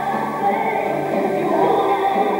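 A pop song with a girl's lead vocal sung into a microphone, played loud over the PA in a school hall.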